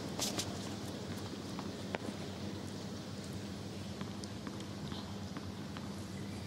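Tennis court ambience between points: a steady low hum under faint background noise, with scattered light clicks and taps, the clearest about two seconds in.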